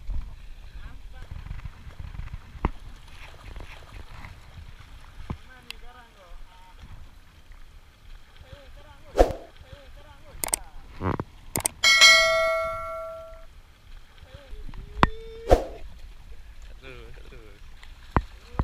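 Small waves washing against shoreline rocks, with wind on the microphone. About ten seconds in come two sharp clicks, then a loud bell-like ding that rings for about a second and a half, typical of the click-and-bell sound effect of a subscribe-button overlay.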